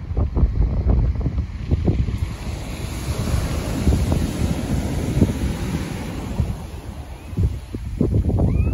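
Wind buffeting the phone's microphone in gusts over waves breaking and washing up a stony beach. The surf's hiss swells through the middle of the clip, and the wind eases briefly near the end.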